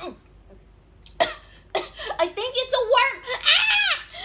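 A child's voice making high-pitched sounds without words after about a second of quiet, climbing to a loud squeal near the end.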